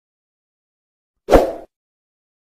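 A single short pop sound effect from the video's intro graphics, coming suddenly about two-thirds of the way in and fading within a third of a second.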